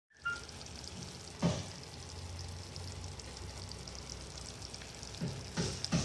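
Fish roast in coconut-milk gravy sizzling in a pan, a steady fine crackle, with a few dull thumps about a second and a half in and again near the end.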